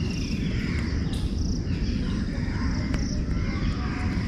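Insects, likely crickets, chirping outdoors in short, high, buzzy bursts about every second and a half, over a steady low rumble.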